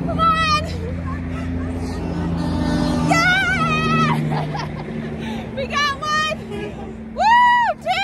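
Interstate highway traffic passing below, a steady low drone of trucks and cars. Four short high-pitched wavering vocal sounds come over it, the last and loudest near the end.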